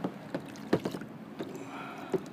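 Light water slaps and knocks against a small kayak's hull on calm sea, several short sharp ones over a steady wash of water and wind; the loudest comes about three quarters of a second in.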